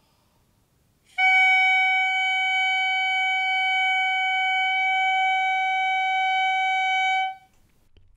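Clarinet mouthpiece and barrel blown on their own, sounding a single steady tone at concert F-sharp, the target pitch of this embouchure exercise. The tone starts about a second in, holds for roughly six seconds and stops cleanly.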